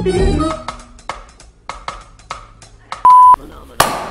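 Intro music ending in the first half-second, then a few light taps. About three seconds in, a loud steady electronic beep lasts about a third of a second, then one sharp hand clap just before the end.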